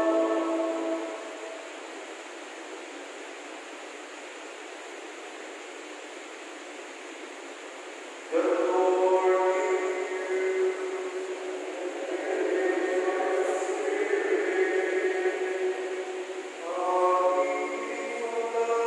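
Choir singing liturgical chant in a large, reverberant church. The singing fades out about a second in, leaving a steady murmur of the congregation, then resumes suddenly about eight seconds in with long held notes.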